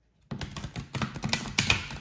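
A deck of oracle cards being shuffled by hand: a dense, rapid run of papery card clicks that starts about a quarter second in.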